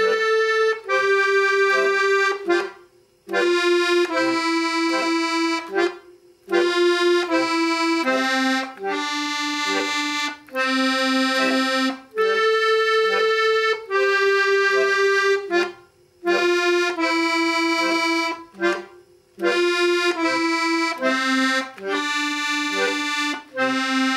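Piano accordion playing a slow beginner's tune in F, a melody of held notes on the treble keys over button basses, in short phrases with brief pauses between them.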